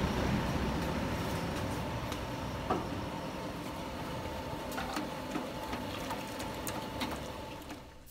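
Steady background noise of a noodle stall with a faint high hum running under it, and a few light clicks and taps of cooking utensils: a wire strainer and ladle against the steel noodle pot.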